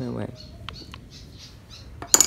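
A brief falling vocal sound at the start, then a few light clicks and faint scraping as the opened plastic body of an angle grinder is handled; the motor is not running.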